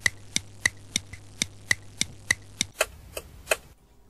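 Clock ticking sound effect, a steady tick-tock of about three ticks a second that stops shortly before the end.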